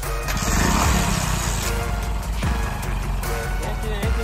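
Small single-cylinder motorcycle engine starting and running at idle on hydrogen gas fed from a bottle in which caustic soda reacts with aluminium foil and water, with background music over it.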